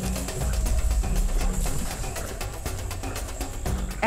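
Background music with a low, sustained drone.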